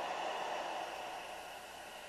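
Faint, steady hiss of static from a small AM radio tuned to a low frequency with no station, fading slightly toward the end.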